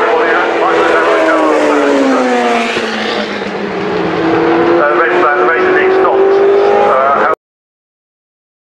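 Historic Formula One car engines running at high revs as cars pass. The pitch drops about two seconds in, then climbs again from about four seconds. The sound cuts off suddenly near the end.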